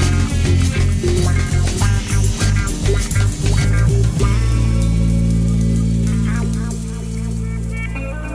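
Rock band playing guitar, bass and drums. About halfway through the drums stop and a last held chord rings on, slowly fading, as the song ends.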